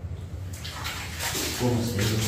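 Clothes being scrubbed and squeezed by hand in a plastic basin of water: water sloshing and splashing, starting about half a second in.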